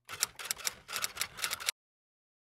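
Typewriter-style typing sound effect: a quick, irregular run of sharp key clicks that cuts off suddenly shortly before the end.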